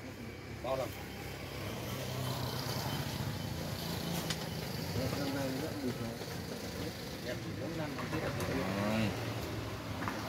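Indistinct voices talking in the background over a steady low engine rumble.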